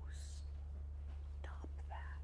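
Soft whispered speech: a short hissy breath of a word just after the start and a couple of brief murmurs later, over a steady low hum.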